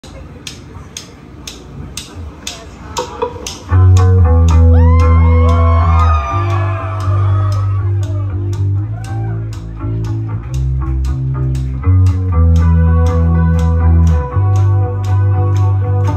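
Live rock band beginning a song: a steady ticking pulse about twice a second, then loud sustained bass and electric guitar chords come in about four seconds in, with sliding pitch bends above them.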